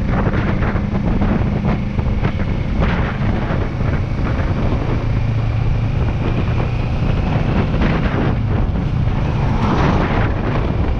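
Motorcycle engine running under acceleration, shifting up from third to fourth gear, with wind buffeting the microphone.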